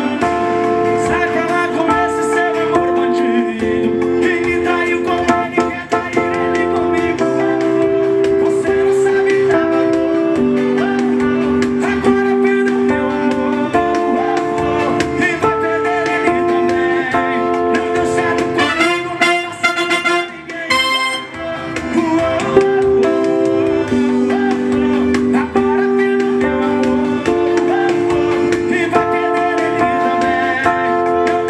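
Yamaha Motif XF6 keyboard playing the chorus of a sertanejo song, with sustained chords that change every second or two. About two-thirds of the way through, the chords drop out for a short break of quick, rapid hits before the progression picks up again.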